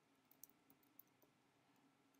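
Very faint computer keyboard keystrokes: a scattered handful of light clicks as a short phrase is typed, over a faint steady hum.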